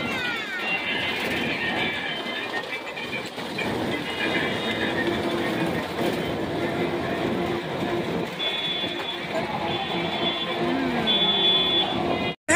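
Busy carnival ambience: crowd voices mixed with a small kiddie train ride of bus-shaped cars rolling around its track.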